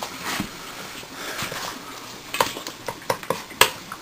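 A utensil stirring scrambled egg in a frying pan, knocking and scraping against the pan: a run of sharp clicks, about three a second, in the second half, over a steady hiss.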